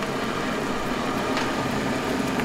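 Steady rushing noise of a copper kettle of buttercream syrup boiling hard on its burner, foaming up as it climbs toward 250 °F. A faint click about one and a half seconds in.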